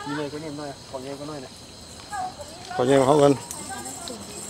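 People talking in short bursts of speech, with pauses between them.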